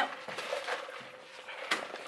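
A brass door knob and deadbolt rattling and clicking as a hand works them, trying to open a front door that won't open, with a couple of sharper clicks near the end.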